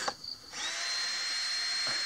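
A cordless drill runs at a steady speed. Its motor spins up about half a second in and holds one even high whine.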